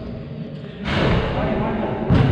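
Indistinct voices echoing in a large gym, with a sudden rush of noise starting about a second in.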